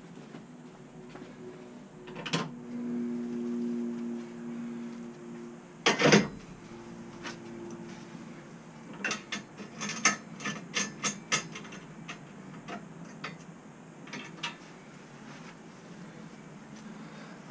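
Metal clanks and clicks of a galvanised steel tow-bar rack being fitted onto its clamshell and the clamp bolt tightened by hand. A low steady tone lasts a few seconds near the start, a sharp knock comes about six seconds in, and a run of quick clicks follows around ten seconds.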